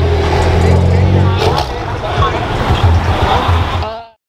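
BMW performance car's exhaust drumming at low, steady revs as it rolls past, turning rougher and more uneven about a second and a half in, with voices over it.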